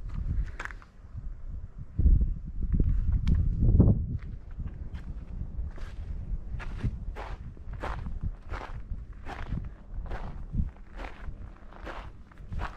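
Footsteps crunching on a gravel path, about two steps a second. About two seconds in there is a loud low rumble lasting about two seconds.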